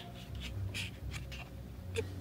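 A folded paper slip rustling and scraping faintly as it is handled, in short, scattered scratchy sounds.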